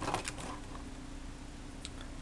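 Clear plastic clamshell packaging of a desktop CPU being handled, with a short crackle at the start, then a steady low hum and one faint click near the end.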